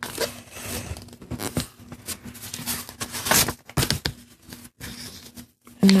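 A sheet of white paper being folded and creased by hand: irregular rustling and crinkling, with a sharper crackle about three and a half seconds in.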